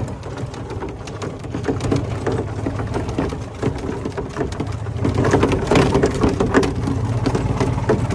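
Golf cart driving over rough grass and dirt: a steady low motor hum with a fast clatter of rattles and knocks from the cart jolting over bumps, busier and louder from about five seconds in.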